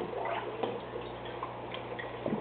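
Aquarium water gurgling and dripping in small, irregular plinks over a steady low hum.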